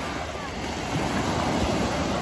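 Small sea waves breaking and washing up a sandy shore: a steady surf hiss that swells a little about a second in.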